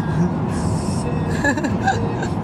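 Steady road and engine noise heard inside a car moving at highway speed.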